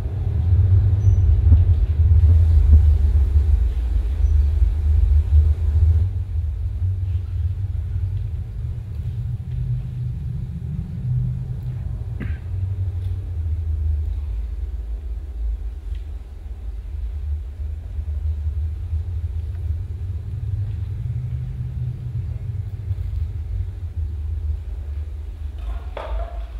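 Deep, low rumble from the opening of a music video's soundtrack played over a hall's loudspeakers, strongest for the first few seconds, then easing and swelling again with no clear beat.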